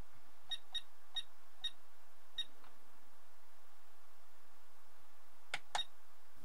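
Five short high beeps from a ToolkitRC M6D AC battery charger as its thumb wheel is turned through the battery-type menu, then two clicks near the end.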